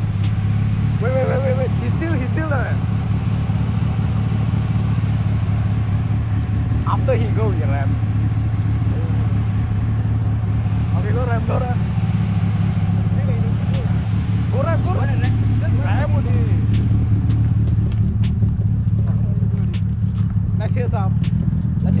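Proton Putra's 4G93 twin-cam four-cylinder, fitted with a 272 high cam, idling steadily at a constant pitch, with indistinct voices talking over it.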